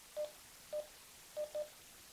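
TYT MD-UV380 handheld DMR radio giving keypad beeps as its menu buttons are pressed to step through the menu: four short beeps of one pitch, the last two in quick succession.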